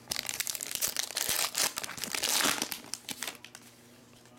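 Foil wrapper of a 2020 Topps Tribute baseball card pack being torn open and crumpled by hand, a dense crackling that is busiest about two seconds in and dies away for the last second.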